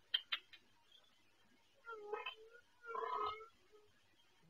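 A cat mewing quietly twice, about two and three seconds in, after a few faint clicks at the start.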